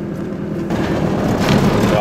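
Goggomobil's air-cooled two-stroke twin running as the car drives along, heard from inside the small cabin, with a steady low hum. A rushing road and wind noise grows louder about two thirds of a second in.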